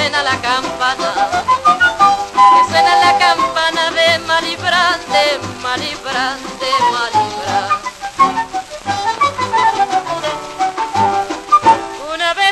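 Instrumental break of a Latin dance-band recording led by trumpet, played from a 78 rpm record on a record player: a busy melody with vibrato over a steady rhythm.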